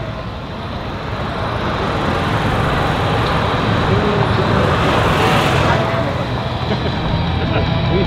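F-35B Lightning II's single F135 turbofan at low taxi thrust as the jet rolls along the runway: a steady, loud jet roar with a deep rumble underneath, its hiss swelling briefly a little past five seconds in.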